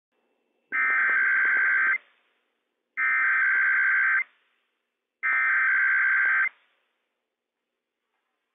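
Emergency Alert System SAME header from a NOAA Weather Radio broadcast: three identical bursts of buzzy two-tone digital data, each about a second and a quarter long with about a second of silence between. The three bursts carry the coded header that opens a Required Weekly Test.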